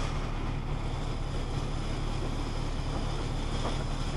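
Automatic car wash heard from inside the car: a steady rush of water and air against the body and windshield over a low, even machine hum.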